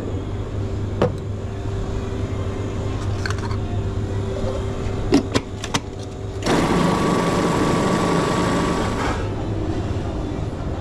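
Stainless commercial food processor switched on and running for about two and a half seconds, blending chickpeas and tahini for hummus, then cutting off suddenly. Before it, a few sharp clicks as the lid and bowl are handled, over a steady low hum.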